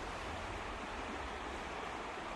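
Steady, even rush of flowing water, with no other distinct sounds.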